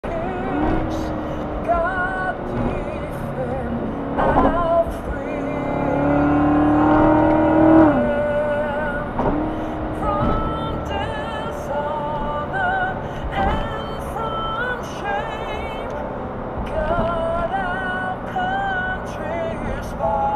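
Music with singing over the drone of a Corvette C7 Z06's supercharged V8 and road noise. The engine's note climbs under acceleration from about 5 seconds to 8 seconds, then drops suddenly at an upshift.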